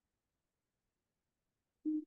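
Near silence, broken just before the end by a man's voice starting to speak.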